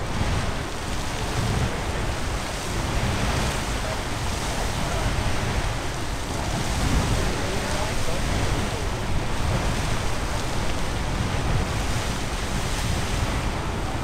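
Castle Geyser erupting in its water phase: a steady rushing of water jetting from the cone and falling back. Wind rumbles on the microphone.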